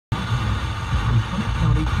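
FM radio broadcast playing through a car's cabin speakers: a steady low rumble with faint music or voice underneath.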